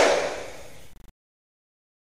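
Tail of a whoosh sound effect: a hissing rush with a falling pitch that fades away and cuts off about a second in with a brief stutter.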